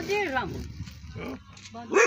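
A dog barking a few times in the background, between bits of speech.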